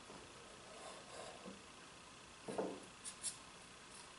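Quiet handling of a metal combination square against a wooden brace stick: a soft knock about two and a half seconds in, then two small clicks just after.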